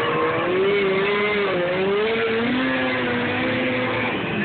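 Snowmobile engine running at high revs as it skims across open water, its whine wavering up and down in pitch.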